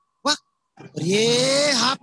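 A short call, then a long drawn-out cry lasting about a second that rises in pitch and falls again at the end.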